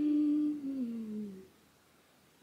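A woman humming a short phrase of a few notes that step down in pitch, lasting about a second and a half.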